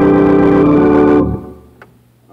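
Organ holding a full D major chord, the return to the one in a gospel preacher-chord progression; it cuts off about a second and a quarter in and fades quickly. A faint click follows near the end.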